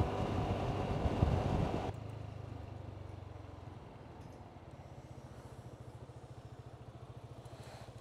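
Motor scooter running with road and wind noise that drops off abruptly about two seconds in, then fades as the scooter slows to a stop, leaving a faint, even low pulse of the engine idling.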